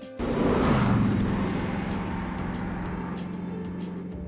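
A sudden loud sound-effect hit, with a sweep falling in pitch over about a second, settling into a steady low hum that slowly fades away.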